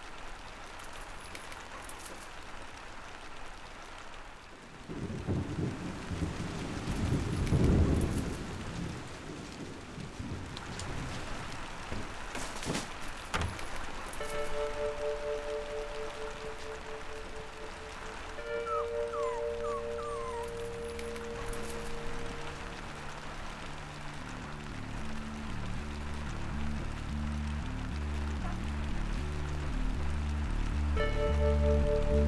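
Steady rain, with a low rumble of thunder that swells and fades about five to nine seconds in. From about fourteen seconds, music comes in with long held tones, then a pulsing low beat that grows louder toward the end.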